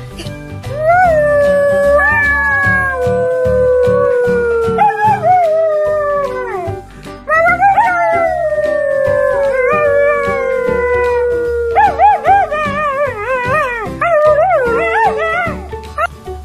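A dog howling: two long drawn-out howls that slide slowly down in pitch, then a wavering, yodelling howl near the end, over background music with a steady beat.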